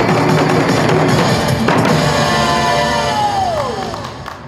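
Korean barrel drums (buk) beaten in time with a trot backing track, with strokes until just under halfway through. The music then ends on a held final chord that slides down in pitch and fades near the end.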